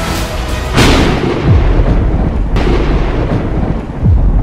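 Cinematic trailer sound design: a heavy boom hits about a second in, followed by a deep rumble with falling low tones and a second hit, over the score.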